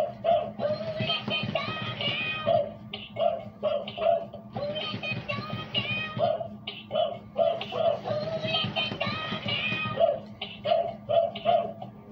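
Gemmy animated plush prisoner dog playing its song, a synthesized singing voice with music, through its small speaker. A steady low hum runs underneath, likely the motor that flaps its ears.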